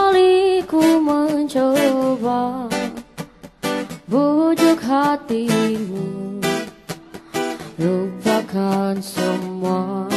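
Music: a woman singing an Indonesian pop song over acoustic guitar strumming, her voice holding notes and sliding between them.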